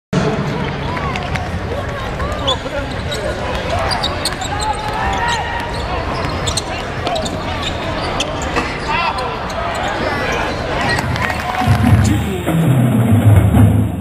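Live basketball game in an arena: a basketball bouncing on the hardwood, sneakers squeaking and a crowd talking. The crowd grows louder near the end.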